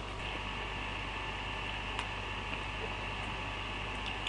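Steady background hiss with a low mains-type hum, the recording's noise floor in a small room, with one faint click about halfway through.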